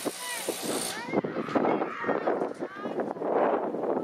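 Children and adults shouting and calling out during a youth football game, with many short, high voices rising and falling over a steady babble. A brief hiss sits over the voices in about the first second.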